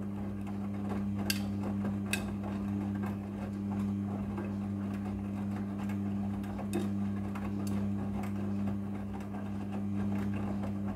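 Midea front-loading washing machine tumbling a load of clothes in the wash cycle: the drum motor gives a steady low hum, with a few short light clicks.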